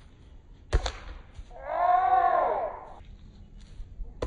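A single sharp knock, then about a second later one drawn-out shout from a person's voice, its pitch rising and then falling.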